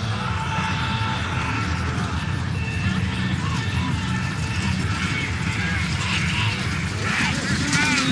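Horse-drawn chuckwagons racing past, pulled by galloping teams: a steady rumble of hooves and wagon running gear. Voices rise near the end.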